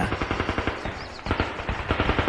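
Rapid automatic machine-gun fire as a sound effect, coming nearer. It eases slightly about a second in, then comes back louder.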